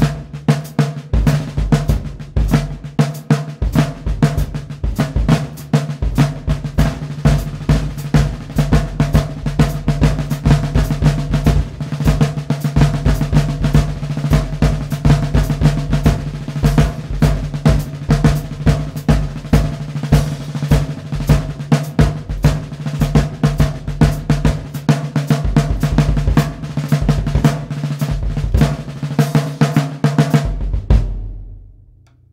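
24-inch by 14-inch Slingerland marching bass drum, converted to a drum-kit bass drum, with a huge, open sound. Its deep beats come in under fast stick strokes and rolls on a 16-inch by 16-inch Slingerland snare field drum, and the drums ring on steadily underneath.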